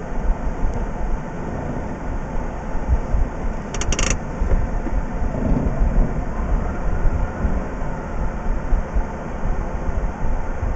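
Mazda RX-8's rotary engine idling while the car stands still, heard from inside the cabin as a steady low rumble. About four seconds in, a brief cluster of short high chirps sounds over it.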